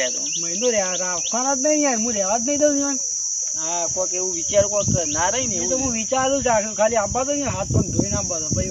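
A steady, high-pitched insect drone, crickets by their sound, runs without a break under men's voices talking.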